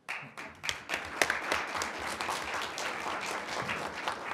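Audience applauding in a room, a dense run of handclaps that starts suddenly and keeps an even level.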